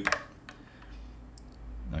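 A few faint clicks over a low hum.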